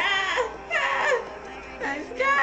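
A high voice wailing in three long downward pitch slides over background music, sounding like exaggerated crying.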